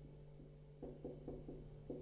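Faint taps of a marker pen striking a whiteboard as a numeral is written, about five short knocks in the second half.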